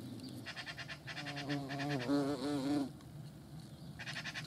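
European hornets buzzing at a wooden nest box, a low steady hum with a louder buzz that wavers in pitch for about two seconds in the middle. A rapid high-pitched chirring runs in the background through the first three seconds.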